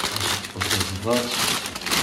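Thin plastic carrier bag crinkling and rustling as hands unwrap it.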